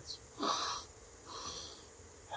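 A man sniffs in sharply through his nose twice: a double nasal inhale, the breathing drill for raising alertness when under-excited. The second sniff is fainter than the first.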